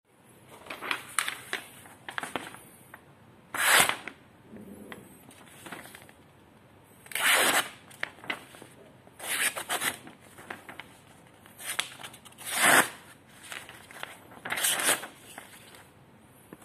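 Freshly sharpened stainless-steel kitchen knife slicing through a sheet of paper: a series of short rasping cuts, a second or two apart.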